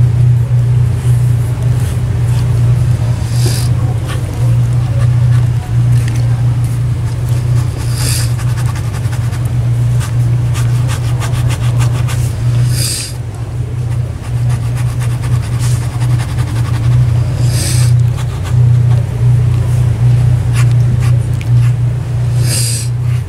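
A loud, steady low hum with no break, and over it a short high hiss that comes back about every four to five seconds.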